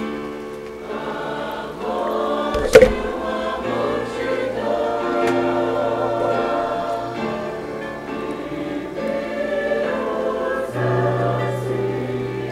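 Congregation singing a worship hymn together over held low bass notes. A single sharp pop about three seconds in is the loudest sound.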